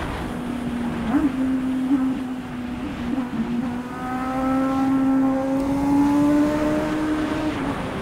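Honda Hornet's inline-four engine running while the motorcycle is ridden, heard from the rider's position with a low rush of wind noise. Its note holds steady, then climbs slowly over the second half and drops off just before the end as the throttle comes off.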